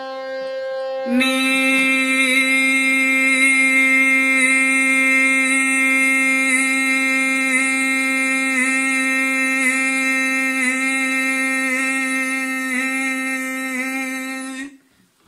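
Harmonium and a male voice holding the same note, growing much louder about a second in. The voice re-stresses the note about once a second without a break: a harkat riyaz exercise of repeating one swar, here Ni, over and over to build movement in the throat.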